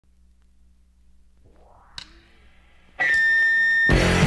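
Opening of a 1980 rock single: a faint low hum with a single sharp click about two seconds in. At three seconds a loud, steady high-pitched tone sounds for about a second, and the full rock band comes in just before the end.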